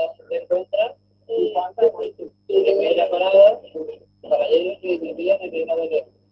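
Indistinct speech in short bursts with brief gaps, over a faint low hum.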